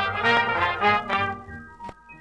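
1938 swing dance band recording, the band playing with a prominent brass section of trumpets and trombones, no vocal. The full band thins out and drops in level about one and a half seconds in, and a single sharp click comes near the end.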